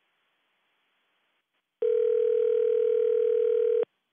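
A single steady telephone-line tone, about two seconds long, starting near the middle and cutting off suddenly, heard over the phone connection as a caller joins the call.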